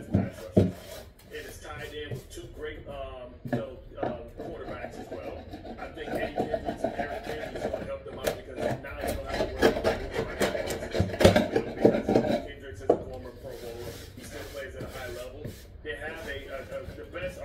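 A hand tool rubbing over a painted wooden board in repeated strokes, with a man talking over it.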